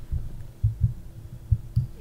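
Irregular low thuds, about three a second, over a faint steady hum.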